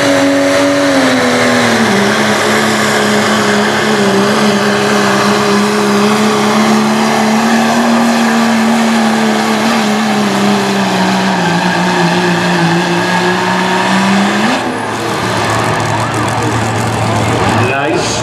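Dodge Ram pickup's turbocharged Cummins inline-six diesel at full throttle, pulling a weight-transfer sled. Its pitch sags slowly as the sled's load builds. About fourteen seconds in the engine drops off abruptly at the end of the pull and runs on lower and quieter.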